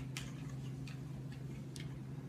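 A dog's claws clicking faintly a few times on a hardwood floor, over a steady low hum.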